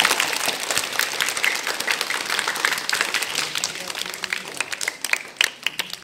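A small group applauding by hand, the clapping dense at first and thinning to scattered single claps near the end.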